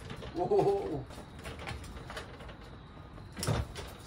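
Motorcycle dolly casters rolling over a coarse, gritty concrete floor as a heavy bike is pushed and turned on it, with scattered faint clicks. A short wordless vocal sound comes about half a second in, and a thump near the end.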